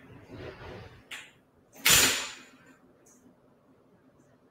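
Off-camera knocks and rustling: a soft rustle in the first second, a sharp click just after a second in, then a louder sudden knock about two seconds in that fades within half a second.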